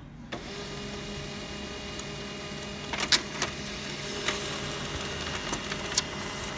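HP LaserJet M15w laser printer starting its mechanism with a sudden onset about a third of a second in, then running steadily, with several sharp clicks in the second half as it prints a report page.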